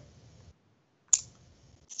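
A gap between speakers: dead silence, then one sharp click about a second in, with a voice starting right at the end.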